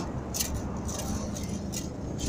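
A metal fan rake scraping through dry grass and loose soil: three short scrapes about two-thirds of a second apart, over a steady low background hum.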